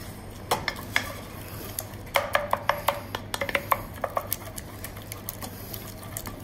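Wooden spatula beating egg into choux paste in a stainless steel saucepan: the spatula knocks and scrapes against the pan in sharp clicks, coming in a quick run about two seconds in.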